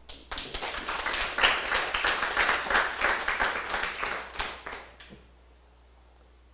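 Audience applauding: a round of clapping for about five seconds that dies away near the end.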